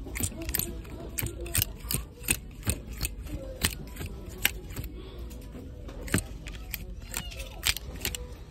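Plastic clothes hangers clicking and scraping along a metal clothing rail as shirts are pushed aside one at a time, with irregular sharp clicks about twice a second.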